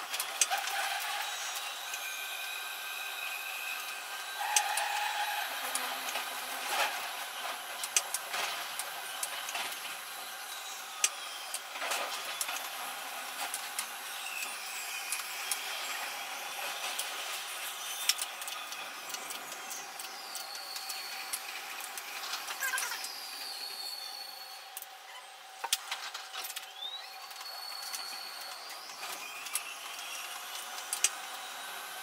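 Metro train running through a tunnel, heard from the cab in time-lapse: a quick string of sharp rail clicks and knocks over steady running noise. A high whine rises and falls several times.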